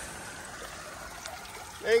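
Faint, steady trickle of water running in a storm drain.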